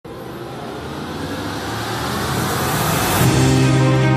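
Television programme's opening theme music: a noisy whoosh swells louder for about three seconds, then a held chord comes in.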